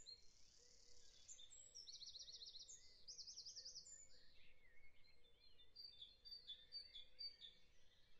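Near silence with faint birdsong: rapid trilled chirps, strongest about two to four seconds in, then scattered fainter chirps.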